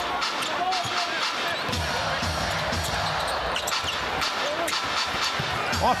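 A basketball being dribbled on a hardwood court during live play, the bounces thudding repeatedly against steady arena crowd noise.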